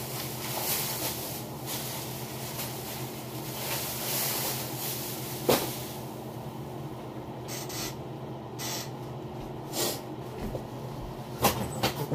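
Steady low electrical or mechanical hum with hiss, broken by a few short clicks and bumps.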